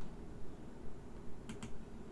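Two faint clicks about one and a half seconds in, like keys being pressed on a computer keyboard, over a low steady room hum.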